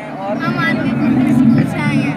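Speech only: a child's voice talking, over outdoor crowd noise.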